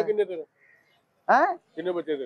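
Speech only: men talking in short phrases with brief pauses between them.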